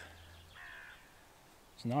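A bird calling faintly, two short calls in the first second, with a man starting to speak near the end.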